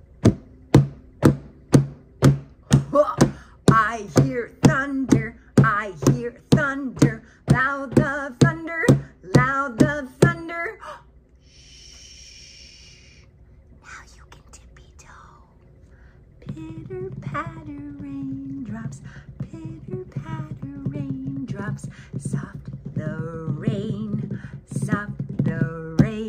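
Hands tapping a surface like a drum in a steady beat, about two taps a second, with a woman's voice chanting in rhythm over it. The tapping stops about ten seconds in; after a short hiss and a quiet gap, a softer, lower voice carries on in a tune.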